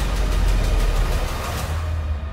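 Military attack helicopter's deep rotor and engine rumble, mixed with a loud cinematic trailer score.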